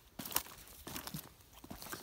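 Footsteps over dry cut grapevine canes and soil, giving a few short crackles as the prunings are trodden on.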